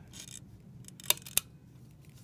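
Mercury II camera's rotary shutter being wound by its top knob: a faint rasp, then two sharp metallic clicks about a third of a second apart as the mechanism cocks.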